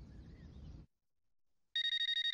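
A cordless home phone starts ringing near the end with a steady electronic ring tone, after a faint low hum and a moment of silence.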